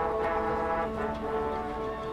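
A marching band's brass section playing sustained, full chords, with the notes briefly breaking and re-entering about a second in.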